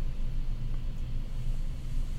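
Steady low background rumble, with no speech over it.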